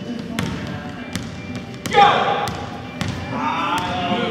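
Several basketballs bouncing irregularly on a hardwood gym floor as children dribble. Over the bouncing, a loud voice calls out about halfway through, and more voices follow near the end.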